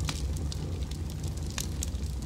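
Fire burning: a steady low rumble with scattered crackles and pops.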